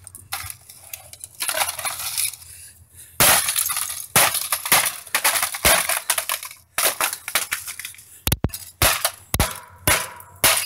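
A laptop's plastic casing and keyboard being smashed with repeated blows: about a dozen irregular hits, each a sharp crack followed by crunching and clinking of broken plastic and parts.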